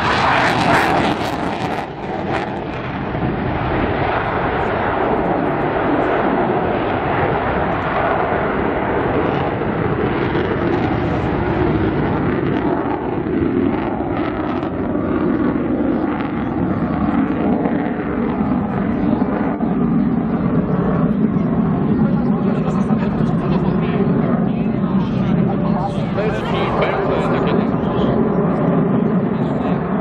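Jet engine of an F-16 Fighting Falcon fighter running at display power, a loud continuous jet noise picked up by a camera's built-in microphone. A pitch within the noise falls slowly throughout as the jet climbs away.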